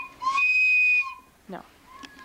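A child's plastic recorder blown hard, giving one shrill, steady high note that cuts off about a second in.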